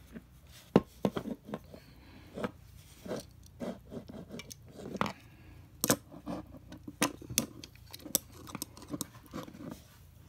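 Hard plastic clicking and knocking as a battery-powered toy train engine's plastic body shell is handled and fitted back onto its battery chassis, in a string of separate sharp clicks.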